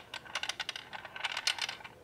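Small steel balls rolling and clicking against the plastic walls and against each other inside a handheld round maze puzzle as it is tilted: a loose scatter of light, quick ticks.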